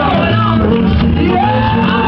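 Live church worship music: a band with bass and percussion playing while voices sing and shout over it.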